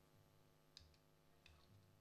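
Near silence: studio room tone with a couple of faint clicks, one about a third of the way in and one about three quarters of the way in.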